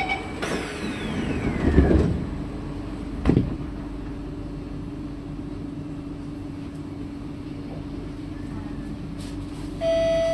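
Doors of a C151A metro train sliding shut: a falling whine as they close, a thud as they meet about two seconds in, and a second thud a second and a half later. Then the steady hum of the train standing at the platform.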